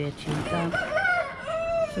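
A rooster crowing once, one long arching call of about a second and a half starting about half a second in, over the end of a stretch of talk.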